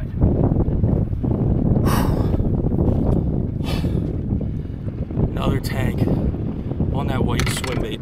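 Wind buffeting the microphone with a steady low rumble, broken by two short hissing bursts about two seconds and three and a half seconds in. Near the end comes a man's short wordless exclamations and heavy breaths.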